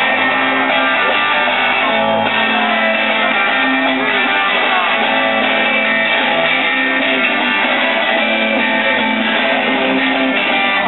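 Live rock band playing the instrumental opening of a song: strummed electric guitars over a drum kit, loud and steady.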